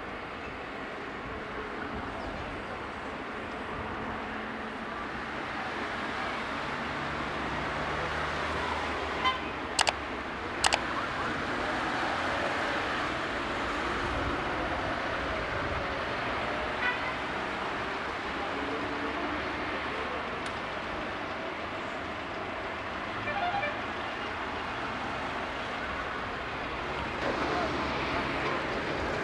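Street traffic noise around a busy roundabout, with cars driving past and a few short car-horn toots. Two sharp clicks sound about ten seconds in.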